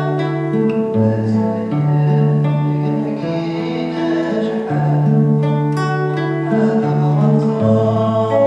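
Classical guitar fingerpicked in an arpeggio pattern over C, D and G chords. Each chord starts on a bass note, with the upper strings plucked after it, and the bass changes about every second.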